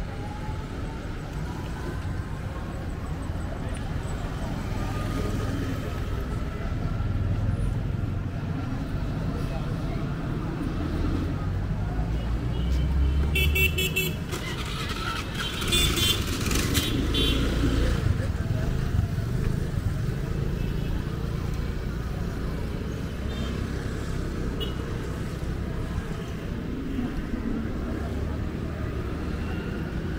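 Town street ambience: steady traffic rumble of passing vehicles with people's voices, and a vehicle horn sounding in short toots twice around the middle.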